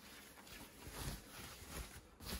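Faint rustling of a thin foam packing sheet being pulled back off a guitar, with a few soft swells as it is handled.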